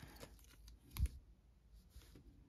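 Faint clicks of clear hard plastic card cases being handled, with one sharper click and knock about a second in.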